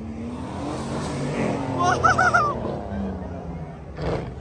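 A car engine revving as it drives past, rising a little in pitch over the first second or so. A short wavering, high-pitched call sounds about two seconds in.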